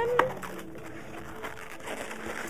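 Latex modelling balloons squeaking as they are twisted and rubbed together: a quick rising squeak and a sharp squeak in the first moment, then quieter squeaky rubbing.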